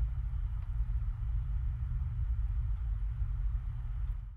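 A steady low rumble with faint hiss above it, with no speech or music.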